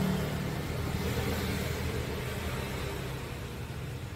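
Steady low hum and fan whirr from a running computer test bench: a bare ATX power supply with its fan, powering the machine while a mechanical hard drive spins through a bad-sector scan.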